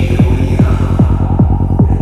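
Psytrance track: a kick drum that drops sharply in pitch on every beat, a little over two a second, with a rolling bass pulsing between the kicks. The treble thins out in the second half.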